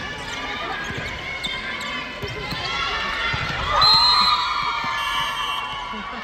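Volleyball players' voices calling and shouting in an echoing sports hall, with one long call about four seconds in. A ball bounces on the wooden court floor underneath.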